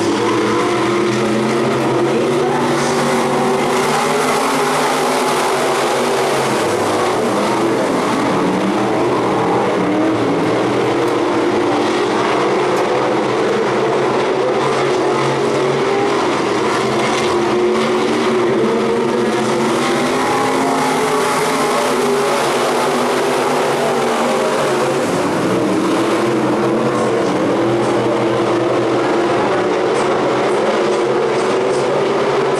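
A field of sport mod dirt-track race cars with V8 engines running laps together. The combined engine note swells and falls away in slow sweeps as the pack goes around the oval.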